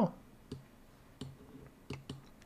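Three or four faint, short clicks spread across a pause in speech.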